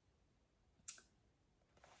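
Near silence: room tone, with one small, sharp click about a second in.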